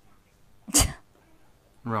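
A single short, sharp burst of breath from a person close to the microphone, a little under a second in, much like a sneeze.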